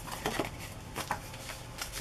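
Faint rustling and a few light taps of a paper tag being handled and laid down on a pile of paper pieces.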